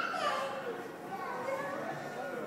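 Indistinct voices of children and other people talking and calling out, with no clear words.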